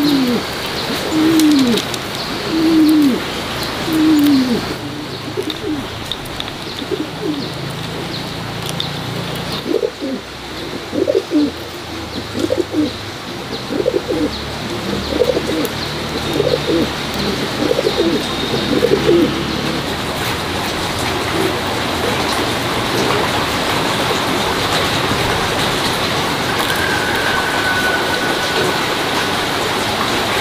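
Bird calls: short low notes that slide down in pitch, repeated about every second and a half at first, then a looser, busier run of calls, over a steady background hiss.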